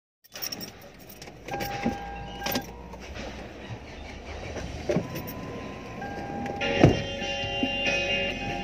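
Handling noises in a car's cabin: scattered clicks and knocks over a low steady hum, with the loudest knock about seven seconds in. Music with steady tones begins in the last second or so.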